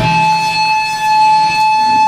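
Electric guitar amplifier feedback: one steady, high-pitched tone ringing on after the band's playing cuts off at the very start.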